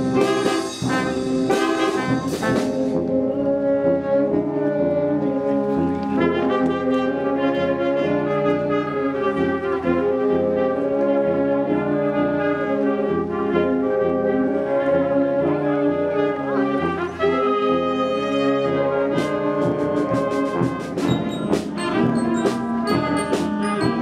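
Community concert band playing a piece led by its brass: sousaphone, saxophones, trumpets and baritone horns in held chords that change every second or so. Sharp clicks come in over the last few seconds. The recording is distorted because the band was louder than the microphone was set for.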